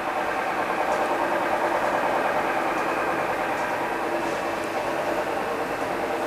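A steady mechanical hum made up of several fixed, unchanging tones, with no change in pitch or level.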